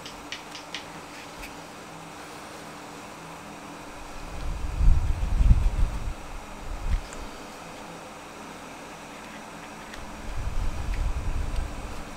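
Steady hum and hiss of a fan or air conditioning in a small room. Low rumbling handling noise comes twice, about four seconds in and again near the end.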